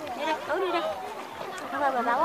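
Several people talking at once: overlapping chatter.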